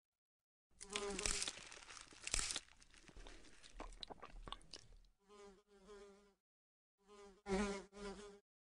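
Animated-film sound effects: crunching, crackling noises for the first few seconds, then a housefly buzzing in two short bursts near the end.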